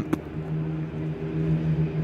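A vehicle engine running with a steady low hum, with a brief click just after the start.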